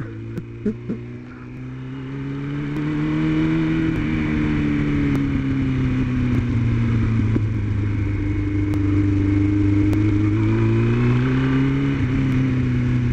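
Engine of a moving road vehicle running steadily under way, over steady road and wind noise. It gets louder over the first few seconds, then its pitch drifts gently down and back up as the speed changes.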